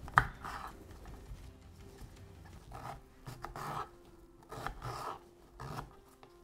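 Kitchen knife cutting peeled beetroot into pieces on a wooden cutting board: about half a dozen short slicing strokes, spaced irregularly.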